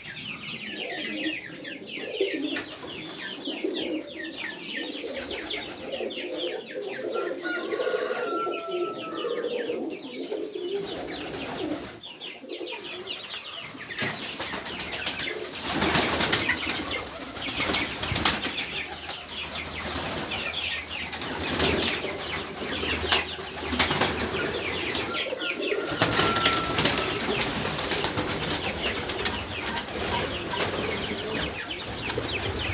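Pigeons cooing and chickens and chicks calling in a coop, with wings flapping now and then. The busiest, loudest stretches come just past the middle and near the end.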